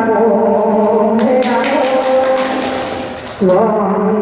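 A woman singing a Mường folk song unaccompanied into a microphone, with long held notes, over a burst of clicking noise from about a second in. About three and a half seconds in, her voice gives way to a man's voice.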